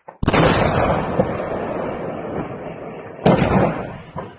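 Ammunition exploding at a burning munitions depot: a sudden loud blast about a quarter-second in, with a long tail that slowly dies away over some three seconds, then another loud bang near the end.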